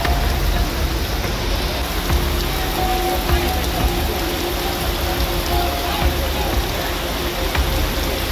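Heavy rain pouring down in a steady hiss on the road and roofs. Faint held tones sound underneath it now and then.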